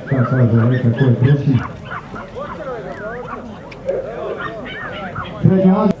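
Dogs whining and yipping in short, rising and falling cries, with a man's voice calling out at the start and again near the end.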